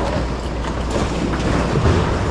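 Rummaging through a bin of donated goods: bags and other items rustling and clattering as they are handled, over a steady low rumble.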